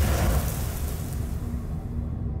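Racing car crash in flames: a loud rushing burst of noise that fades away over about two seconds above a deep steady rumble.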